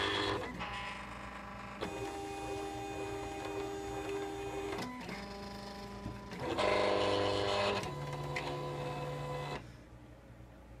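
Silhouette Cameo 3 cutting machine's motors feeding the cutting mat and moving the tool carriage in a series of short runs. Each run is a steady whine at its own pitch, and the runs stop shortly before the end. This is typical of the machine locating the printed registration marks before it starts to cut.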